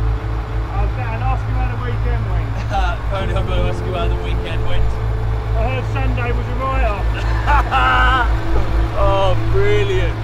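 Diesel grab lorry engine idling with a steady low rumble, with men's voices talking over it.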